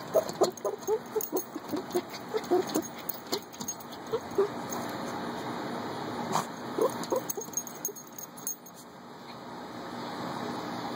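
A dog rooting in the dirt with its nose down a hole it is digging, making quick short sniffs and scrabbling noises in two runs: one through the first three seconds, another about six to eight and a half seconds in.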